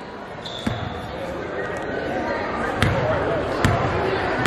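Basketball bouncing on a hardwood gym floor: three separate dribbles at the free-throw line, each a sharp thud, the last two less than a second apart, heard over the gym's background chatter.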